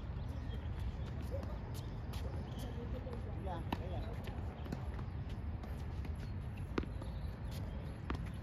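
Tennis rally: sharp pops of a tennis ball struck by rackets and bouncing on a hard court, several hits spaced one to three seconds apart, over a steady low rumble.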